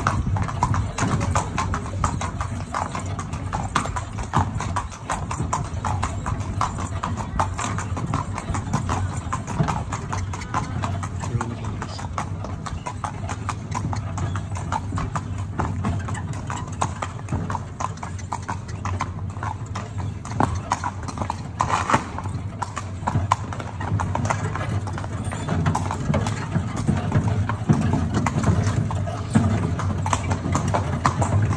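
A carriage horse's hooves clip-clopping steadily as it pulls the carriage, over a steady low rumble of the carriage rolling along.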